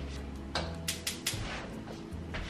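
A pot being taken from a lower cabinet and set on the stove: several quick knocks and clatters about halfway through, over soft background music.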